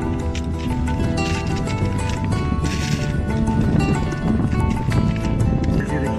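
Background music: sustained instrumental notes over a busy, steady rhythm.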